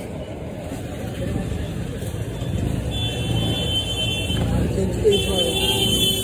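Busy street background: a steady low traffic rumble with voices nearby, and a thin high-pitched tone heard twice, once about halfway through and again near the end.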